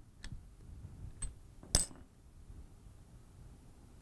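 Small metal parts clinking as the nut is taken off a gas regulator's rubber diaphragm and plug assembly, a few faint clicks and one sharper, ringing clink a little under two seconds in.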